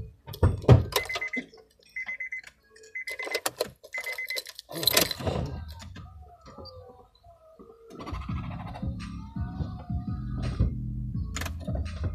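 Knocks and clicks, then an electronic beep sounding four times, once a second, each short and high. A brief rush of noise follows, and about eight seconds in, music with a heavy deep bass comes in.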